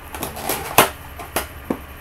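Tape on the top of a cardboard action-figure box being cut and the flap worked open: a few sharp snaps and crackles of tape and cardboard, the loudest just under a second in.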